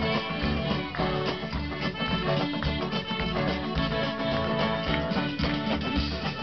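Live band playing a fast song, with guitar, amplified through a PA.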